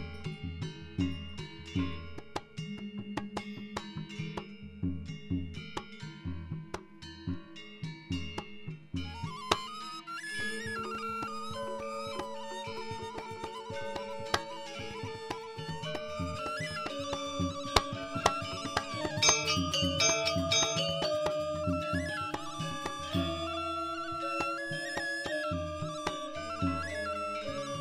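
Balinese gamelan playing Barong dance music: sparse struck metal notes with low drum strokes at first, then the ensemble picks up about ten seconds in into a denser, fuller passage that grows louder and busier later on.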